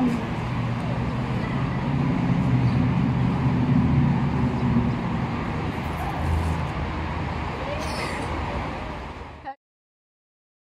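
Low, steady rumble of street traffic, a little louder in the middle. It cuts off abruptly into silence just before the end.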